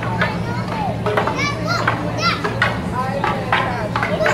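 Children's high-pitched voices calling out and chattering, with repeated sharp knocks and a steady low hum underneath.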